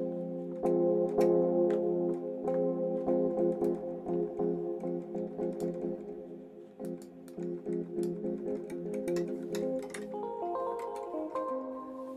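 Ableton Electric's modelled electric piano playing a held chord that is restruck over and over, each strike carrying a short click from the mallet-noise component, through reverb. The chord changes near the end.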